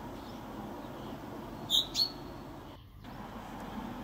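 A small bird gives two short, sharp chirps about a quarter of a second apart near the middle, over a steady low background hum. The sound briefly dips out about three seconds in.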